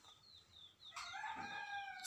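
A faint, long, pitched animal call begins about halfway through and is held past the end, with a few faint high chirps before it.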